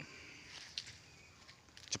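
Faint outdoor ambience with a few soft, short clicks and rustles. A man's voice starts right at the end.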